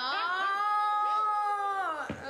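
A woman's voice holding one long, high, howl-like note for about two seconds, dropping in pitch as it ends.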